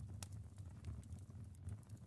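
Faint steady low hum with a few soft, scattered clicks: quiet background tone between narrated lines.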